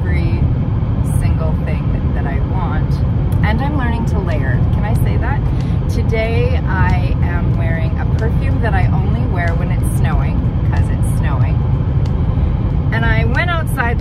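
A woman talking over a steady low rumble of road noise inside a moving car's cabin.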